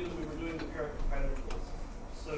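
Speech: a man talking continuously, over a low steady hum.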